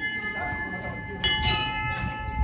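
Metal temple bells ringing: one, struck just before, rings on with several high steady tones, and a second strike about a second and a quarter in adds a lower tone that keeps ringing.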